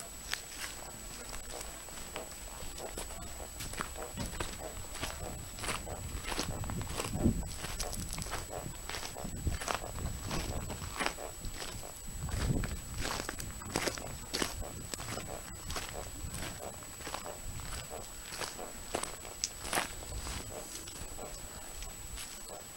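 Footsteps of people walking, a run of irregular steps, over a thin steady high-pitched whine, with two brief low rumbles near the middle.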